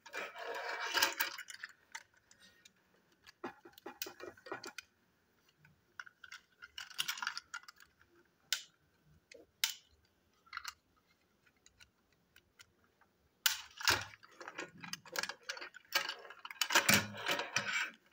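Plastic parts of a knockoff TrackMaster Douglas toy engine and tender being handled and hooked together: groups of small plastic clicks and rattles with quiet gaps between, busiest at the start and over the last few seconds.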